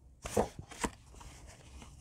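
Small sheets of patterned craft paper being shuffled and slid over one another by hand: two short paper rustles in the first second, then faint handling.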